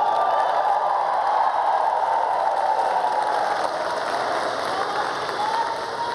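Large audience applauding steadily, with voices calling out in the crowd; the applause eases off a little in the last couple of seconds.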